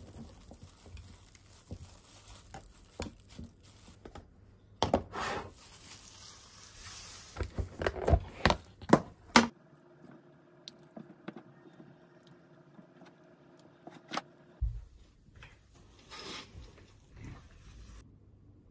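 Kitchen food-handling sounds: plastic wrap and containers rustling and utensils clicking against dishes, with a run of sharp clatters about halfway through. A spatula then scrapes lightly in a small pot of curry sauce over a steady low hum.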